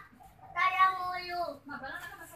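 Two drawn-out, high-pitched vocal calls: the first lasts about a second and falls in pitch at its end, and a shorter one follows near the end.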